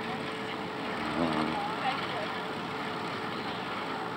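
Steady rushing noise of riding a bicycle, wind and tyres on the path, with faint voices a little over a second in.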